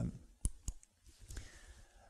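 Two sharp clicks about a quarter second apart, then a few fainter ticks, from the buttons of a handheld presentation remote.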